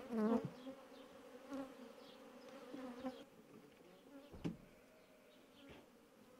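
Honeybees buzzing around open hives, the pitch wavering as single bees fly close past, loudest right at the start. A single sharp knock comes about four and a half seconds in.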